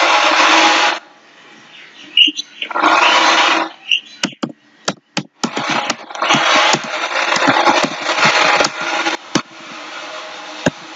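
Sharp clicks of a computer mouse and keyboard as a query is typed, between blocks of loud rushing noise that comes and goes for a second or several seconds at a time.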